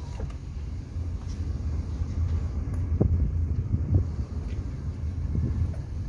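Wind buffeting the phone's microphone: an uneven low rumble with stronger gusts about three and four seconds in.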